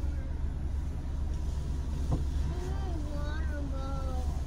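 A car engine idling with a steady low hum, heard from inside the cabin, with a single sharp click about two seconds in.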